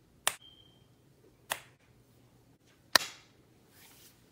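Masking tape being pulled off watercolor paper and a cutting mat: three short, sharp snaps about a second and a half apart, the last the loudest.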